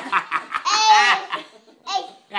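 People laughing in short bursts, then a long high-pitched squeal of laughter around the middle that fades out.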